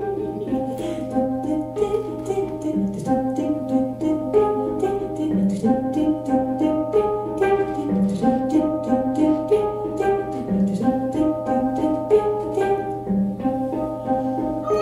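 Hang (steel handpan) played with the hands: a steady stream of ringing, overlapping metallic notes struck several times a second, in a melodic figure that comes round about every two and a half seconds.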